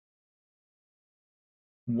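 Silence: the sound track is cut to nothing, until a man's voice starts just before the end.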